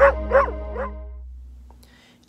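A dog barking three quick times over the held chord of a short music sting. The chord fades away toward the end.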